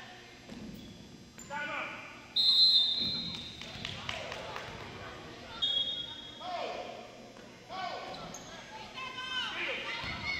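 Referee's whistle blown in a loud blast about two and a half seconds in, then a shorter blast a few seconds later as play stops. A basketball bounces on the hardwood gym floor, with voices echoing in the hall.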